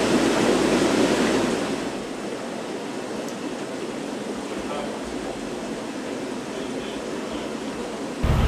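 Steady hiss and bubbling of aquarium sponge filters running on an air system, louder for about the first two seconds, then even.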